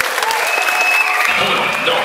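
Audience applauding, with voices calling out among the clapping.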